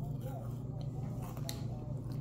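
Quiet chewing of a chocolate-frosted-donut Kit Kat wafer bar, with a few faint crunches, over a steady low hum.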